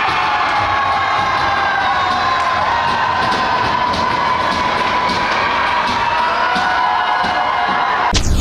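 Children cheering and shouting to celebrate an ice hockey goal, many high voices overlapping in long held shouts, with faint clicks scattered through.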